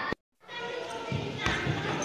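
A futsal ball struck with a single sharp thud about one and a half seconds in, among players' voices on the court. The sound drops out briefly near the start.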